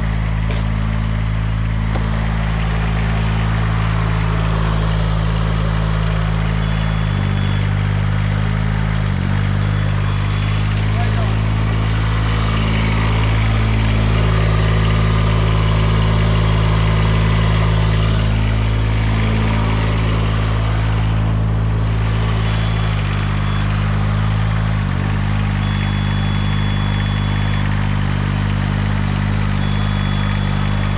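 The engine of a tracked spider lift running steadily while the machine travels on its rubber tracks, its tone shifting twice, about a quarter of the way in and again about three-quarters through. A thin high tone comes and goes over it.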